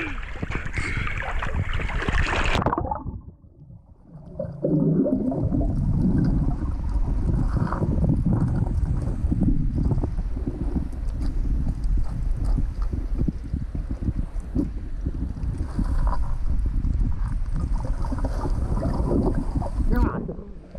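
Water splashing and sloshing at the surface as a snorkeler wades in, cutting off sharply after about three seconds when the camera goes under. From then on, muffled underwater water noise with a low rumble and many small ticks as the diver fans the gravel of the riverbed.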